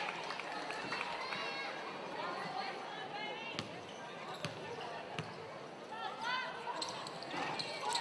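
Basketball bounced three times on a hardwood arena court by a free-throw shooter, each about a second apart in the middle, over a steady murmur of crowd voices with a few short calls.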